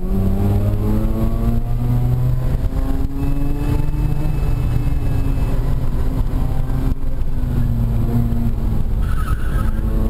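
Mazda RX-8's Renesis two-rotor rotary engine, with an aftermarket HKS exhaust, heard from inside the cabin at racing pace: revs climb, drop back at shifts or lifts, and climb again several times. A brief tyre squeal comes near the end.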